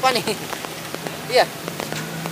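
Hot oil sizzling and crackling in a large wok as cassava crackers (kecimpring) deep-fry, a steady hiss scattered with fine pops.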